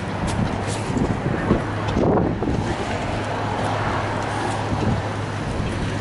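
Wind rumbling on a phone microphone over a steady traffic and engine hum, with a few small handling clicks.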